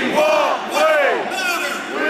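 Arena crowd chanting in unison: a short shout that rises and falls in pitch, repeated about every half second.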